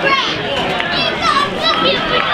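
Football crowd voices: overlapping shouts and chatter, many of them high-pitched children's voices.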